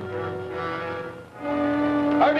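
Orchestral film score: bowed strings holding long notes. The music dips briefly about a second and a half in, then a new, lower note is held.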